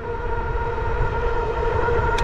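Electric bike's hub motor whining at one steady pitch while cruising at full throttle near its 28 mph top speed, under a low rumble of wind on the microphone.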